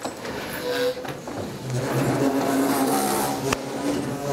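A roomful of people getting up from their chairs and moving about: chairs shifting and shuffling feet under a murmur of overlapping voices, with one sharp knock near the end.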